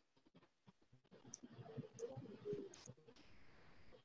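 Faint whiteboard marker writing: the tip's clicks, scratches and a few short squeaks on the board, starting about a second in and dying away near the end.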